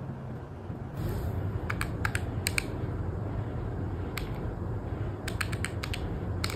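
Keys of a desktop calculator being pressed to work out a subtraction: a handful of sharp clicks about two seconds in, then a quicker run of clicks near the end.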